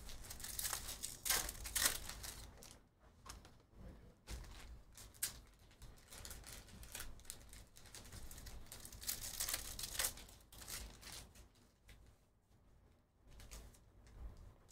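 Plastic wrapper of a trading-card pack crinkling and tearing as it is opened, in quiet, irregular rustles, with cards being handled.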